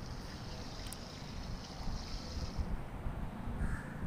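Granulated sugar pouring from a bowl into a pot of water and carrots: a soft steady hiss that stops about two and a half seconds in, over a low background rumble.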